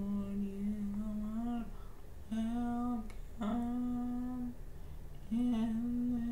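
A woman humming to herself: four long held notes at a near-steady pitch, each a second or so long, with short breaks between them.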